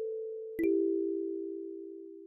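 Kalimba tines ringing. An A4 note sustains and fades, then about half a second in E4 and G4 are plucked together with a light click and ring on as a two-note chord, slowly decaying.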